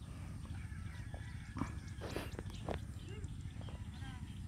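Faint, distant sounds of carabao-drawn carts hauling sacks of palay across a field: a few scattered knocks and faint calls over a low, steady rumble.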